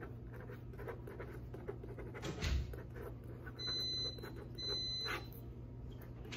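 Ballpoint pen scratching on paper at a counter, with a brief swish about two seconds in. Just past the middle, two high electronic beeps sound, each about half a second long and just under a second apart.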